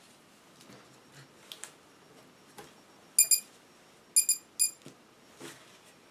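Electronic beeper on a quadcopter powering up from its newly connected battery. It gives one short beep, then about a second later three quick beeps at the same pitch. A few faint handling clicks come before the beeps.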